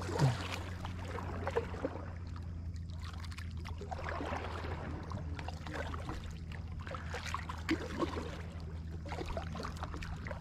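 Kayak paddle strokes dipping and splashing in calm lake water, with a steady low hum underneath.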